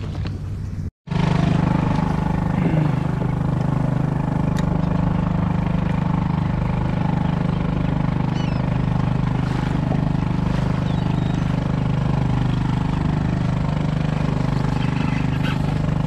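A motor running steadily with an even, low hum. It starts just after a very brief dropout about a second in.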